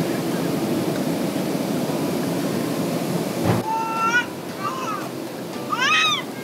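Steady airliner cabin noise, the rush of engines and airflow. About three and a half seconds in it drops abruptly to a quieter cabin hum, over which a baby gives a few short, high gliding squeals.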